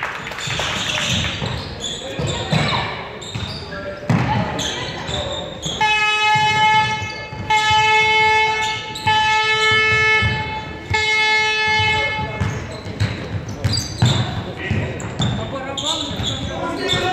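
A horn sounds four times at one steady pitch, each blast about a second and a half long with short breaks between, over a basketball bouncing on the hall floor and scattered voices in a large hall.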